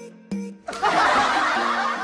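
Light background music with a plucked melody, and from under a second in a loud burst of laughter over it.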